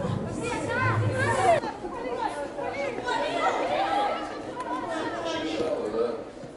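Women footballers' voices shouting and calling to one another during open play, several at once in overlapping chatter.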